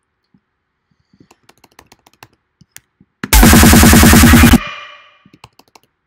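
Light computer keyboard and mouse clicks, then about three seconds in a loud burst of dubstep playback from the DAW, a fast repeating electronic drum-and-synth pattern lasting about a second and a half before it stops, with a short fading tail.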